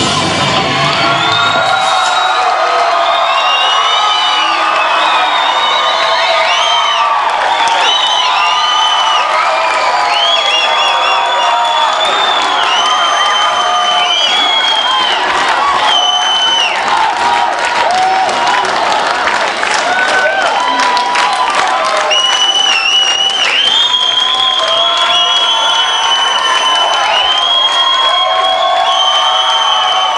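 Concert crowd cheering, whooping and applauding, calling for an encore; the band's final guitar chord stops about a second in, and long high whoops and screams run on over the clapping.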